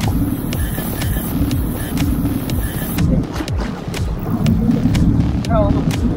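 Heavy wind rumble on the microphone aboard a boat at sea, with a brief shouted voice near the end.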